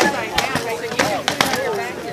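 A quick flurry of sharp blows from rattan swords striking a shield and armour, about six or seven hits in under two seconds.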